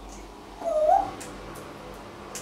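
Congo African grey parrot giving one short tonal call about halfway through, dipping and then rising in pitch.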